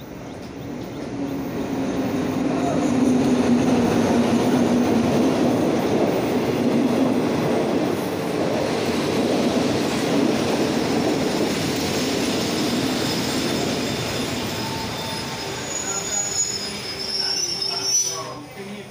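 State Railway of Thailand passenger train drawing into the station: the coaches roll past with a rumble that builds over the first few seconds, then eases as the train slows. Thin high brake squeals come in near the end.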